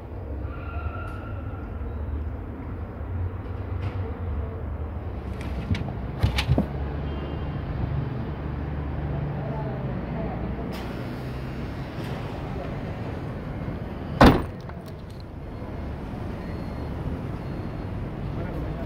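Volkswagen Gol Trend's hatchback tailgate being shut with one loud thump about fourteen seconds in, over a steady rumble of street traffic. A few lighter knocks come about six seconds in.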